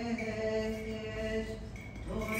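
A male voice chanting an Orthodox Byzantine hymn in long, slowly moving held notes, the line dying away just before the end.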